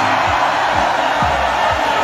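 A large outdoor crowd cheering and shouting over music with a steady low beat.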